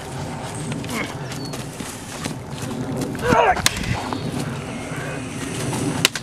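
Prop lightsaber duel: low rustling movement throughout, a short vocal sound about three seconds in, and a single sharp clack of the prop blades striking just after it.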